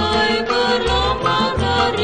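Kroncong music played by a small ensemble: a held, gently wavering melody line over low bass notes.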